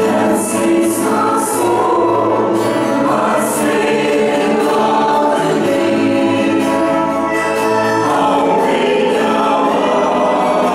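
A choir singing, its voices holding long notes.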